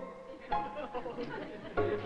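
Studio orchestra playing a light string accompaniment with sharp plucked notes, under the voices of a studio audience.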